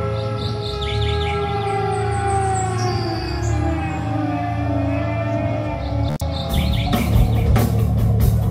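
Live rock band: a sustained low drone under slow, falling, sliding tones and bird-like chirps from guitar or effects. About six seconds in, the full band with drums comes in hard.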